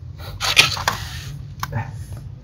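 A man blowing out a hard, hissing breath through pursed lips for about half a second, the reaction to the burn of a hot chilli pepper. Near the end come a sharp click and a brief vocal sound.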